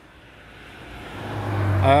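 A road vehicle approaching, its tyre and engine noise growing steadily louder, with a low engine hum coming in about a second in.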